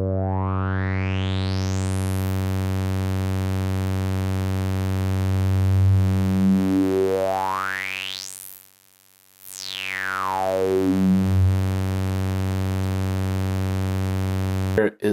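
A steady low synthesizer drone played through Steve's MS-22, a dual low-pass/high-pass Eurorack filter modelled on the Korg MS-20, as its cutoffs are swept by hand with the resonance up. A whistling resonant peak rises to the top about two seconds in. Around six seconds in another resonant sweep climbs, the sound almost cuts out for a moment, and then the whistle slides back down into the bass.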